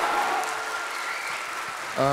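Studio audience applauding, the clapping slowly dying down.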